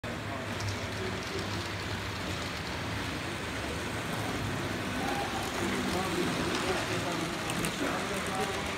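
Indistinct background voices in a hall over a steady rumble of model trains running on the track.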